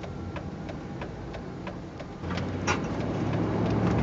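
Engine hum and road noise heard from inside a moving vehicle's cab; the hum grows louder about two seconds in as the engine picks up. Faint, regular ticking runs through it, with one sharper click near the end.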